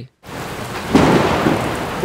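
Thunderstorm: a steady hiss of rain starts suddenly, and a low rumble of thunder swells about a second in, then slowly fades.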